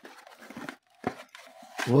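Soft rustling of a cardboard gift box and its paper lining being handled as a plastic cookie container is pulled out, with one sharp click about a second in.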